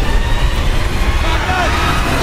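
Loud, steady low rumble of flames burning, a fire sound effect in a TV action scene's mix, with a faint wavering voice-like cry over it about a second and a half in.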